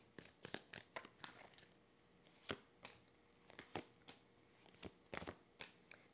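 Tarot cards being shuffled by hand and dealt onto a wooden table: faint, irregular soft clicks and slaps of card on card, with a small cluster near the end.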